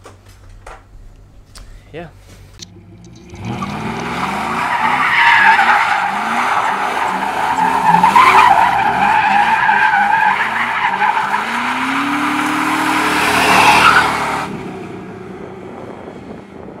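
Dodge Dakota pickup's engine revving hard, rising again and again, with its tyres squealing as they break loose. The sound starts about three and a half seconds in and stops abruptly near the end.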